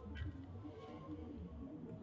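Faint handling sounds as a metal screw with washer is set by hand into the hole of a plastic surge-protector housing: one small click a fifth of a second in, over a low rumble.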